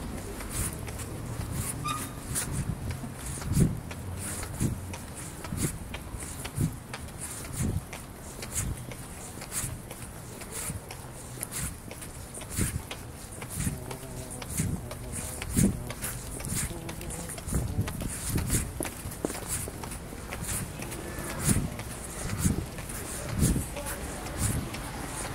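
Regular thumps about once a second, like footsteps, over faint indistinct voices.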